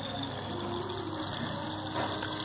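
Water trickling steadily out of a soaked cloth wrapped over the outlet of a running SOBO WP-850F aquarium filter, with the submerged pump running underneath. The cloth slows the outflow to a very slow trickle, which is its purpose here: cutting the filter's water flow.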